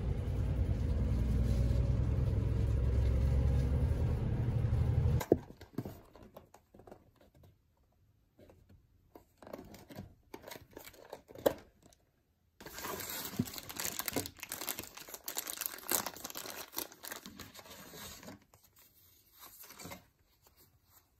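Low steady rumble of a bus interior for about five seconds, cut off suddenly. Then scattered clicks and taps of a small cardboard box being handled, followed by several seconds of dense crinkling and tearing of plastic packaging being opened.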